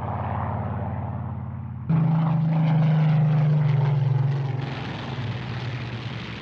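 Piston-engined propeller aircraft droning steadily. It jumps suddenly louder about two seconds in, then drops back after about four and a half seconds.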